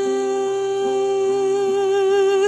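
Music from a Turkish song: one long melody note held steady in pitch, over a lower accompaniment note that pulses on and off.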